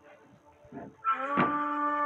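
Devotional background music: after faint playing, a loud held chord of several steady tones swells in about a second in and sustains, with a single sharp knock just after it starts.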